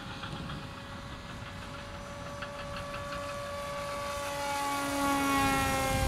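Hobbyking Super G RC autogyro's electric motor and propeller whining in flight. The whine grows steadily louder as the model comes closer, then drops in pitch near the end as it passes overhead.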